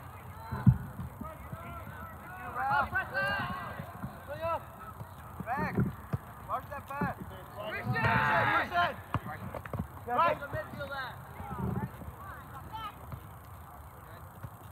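Indistinct shouts and calls from players and onlookers across an open soccer field, coming in short scattered bursts with a longer, louder shout about eight seconds in. A single sharp thud sounds about a second in.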